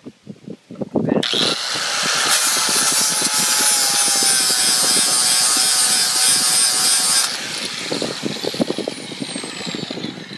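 Angle grinder with a 4.5-inch 40-grit flap disc grinding down the metal hub of a lawn-tractor wheel to smooth and level it. It runs loud and steady for about six seconds, then is switched off and winds down with a high whine that falls in pitch.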